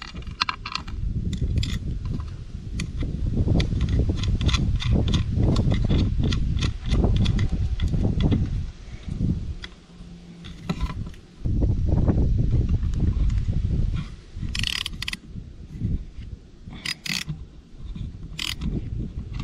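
Wrench and socket ratchet tightening a cable nut onto a terminal stud of a boat battery switch: many sharp metallic clicks, with clusters of stronger ratchet clicks near the end. A loud low rumble runs under much of it and drops away briefly in the middle.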